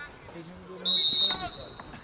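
Referee's pea whistle: a single loud blast of a little over half a second, about a second in, with faint field voices around it.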